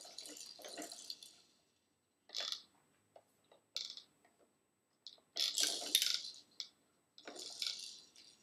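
Plastic toy globe on a baby activity center rattling as it is turned by hand. It comes in several short bursts separated by near-silent gaps.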